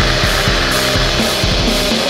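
Black metal recording: heavily distorted electric guitars over drums in a dense, loud, unbroken wall of sound.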